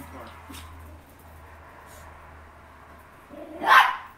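A dog barks once, loudly, near the end after a few seconds of quiet.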